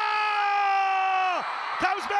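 Football commentator's long drawn-out goal yell, one held note falling slightly and cutting off about a second and a half in, over crowd noise from the stadium.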